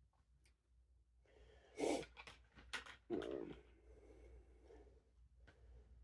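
Faint breathing, with a short breath about two seconds in, and a few light clicks of a plastic knife against a plastic food tray as pancakes are cut.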